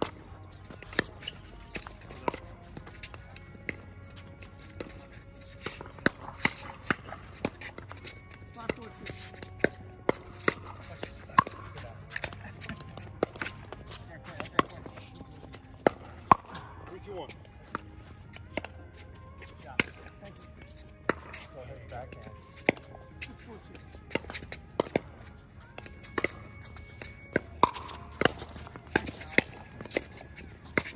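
Pickleball rally: sharp pops of paddles striking the hollow plastic ball and the ball bouncing on the hard court, coming in quick runs throughout with short gaps between points.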